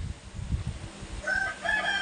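A rooster crowing: one long held call that begins a little past halfway through, over a low rumble.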